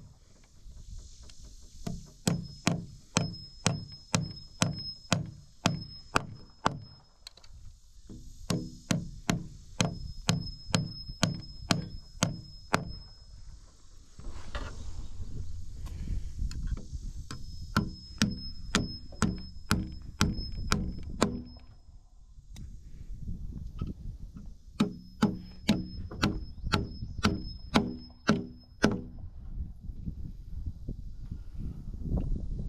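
Hammer driving galvanized nails through a steel twist rafter tie into a heavy timber rafter: quick, even blows about two a second, in four runs with short pauses between nails.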